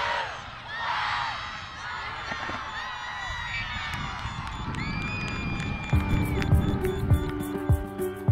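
A crowd of children cheering and shouting, with one long high scream near the five-second mark. About six seconds in, background music with a steady beat comes in.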